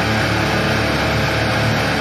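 Hardcore punk band's distorted electric guitars holding a sustained, ringing chord, with no drum hits.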